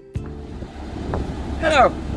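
Steady outdoor background noise with a low rumble, just after a guitar piece cuts off. A man's voice begins speaking near the end.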